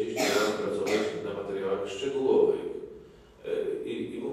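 A man's speech into a desk microphone, with a short, harsh throat clearing right at the start.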